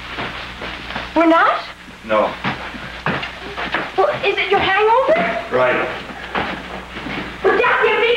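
People's voices in short bursts of speech.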